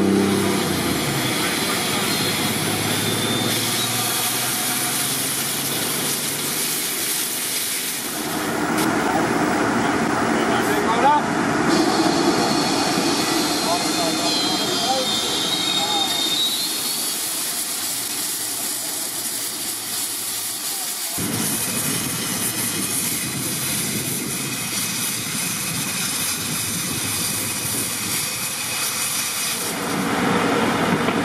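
Sewer-lining equipment running: a small engine and a steady hiss of air, with indistinct voices. The sound changes abruptly about 8 and 21 seconds in.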